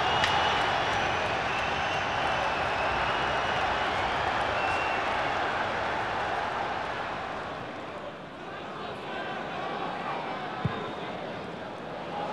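Football stadium crowd cheering after a goal, a steady wash of noise that drops back about eight seconds in.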